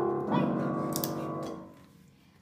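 Upright piano keys pressed at random by a dog's paws: a dissonant cluster of many notes is struck about a third of a second in, over the ringing of an earlier cluster, and dies away over about a second and a half.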